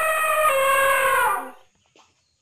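Rooster crowing: the long held final note of the crow, wavering slightly, which falls away and stops about one and a half seconds in.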